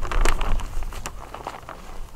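Clear plastic sheeting rustling and crinkling as it is spread over a garden bed by hand, with a few sharp crackles in the first second, then quieter handling.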